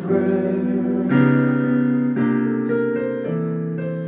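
Yamaha digital keyboard playing sustained piano chords, changing to a new chord about once a second.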